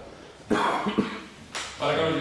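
A person coughing twice, about half a second and a second in, in a small room.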